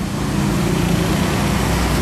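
Road traffic: a steady engine hum with tyre noise from passing vehicles, and a deep rumble that grows about a second in.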